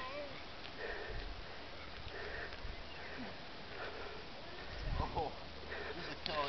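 Person breathing heavily close to the microphone while walking up a steep hill, a breath about every second and a half, with a faint voice about five seconds in.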